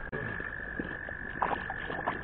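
A frog calling in one steady, unbroken high trill over faint creek-water hiss, with a few light knocks about one and a half seconds in.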